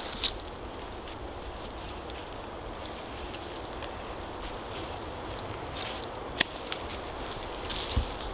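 Hand pruning clippers cutting a fresh grapevine, with one sharp snip about six and a half seconds in and a few fainter clicks around it, over a steady outdoor background.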